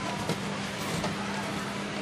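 A few soft hoofbeats of a horse cantering on sand arena footing in the first half-second, over steady outdoor background noise with a low, even hum.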